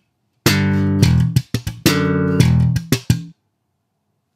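1966 Fender Jazz Bass with Rotosound strings, recorded direct, playing one bar of slap bass. A popped two-note double stop (G and D, implying E minor) with an open E is followed by a quick slap-pop-slap of muted ghost notes. About a second and a half in, the double stop moves down to F sharp and D and the same ghost-note figure follows, ending a little after three seconds in.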